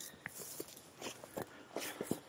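Footsteps on dry grass and loose stones: a few soft, separate scuffs and rustles.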